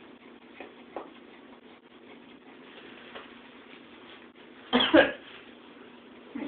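A person clearing her throat or coughing once, short and loud, about five seconds in, over a faint steady background.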